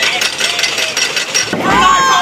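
Roller coaster lift chain and anti-rollback ratchet clacking rapidly and evenly as the Mind Bender's train climbs to the crest. About one and a half seconds in, riders start yelling and whooping as the train nears the drop.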